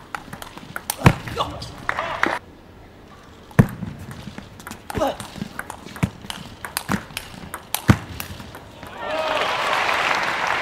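Table tennis rally: the sharp clicks of the ball striking rackets and table, about one every half-second to second, with shoes squeaking on the court floor. Crowd applause breaks out near the end as the point is won.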